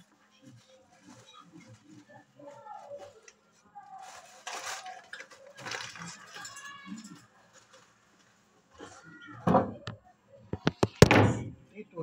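Rustling of a plastic bag of bird feed and soft voice-like sounds, followed near the end by a quick run of sharp knocks and clatter as the phone and cage are handled.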